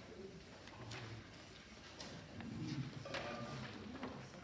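Soft rustles of a conductor's paper score pages being handled and leafed through, with a few brief paper crackles, over faint low murmuring voices.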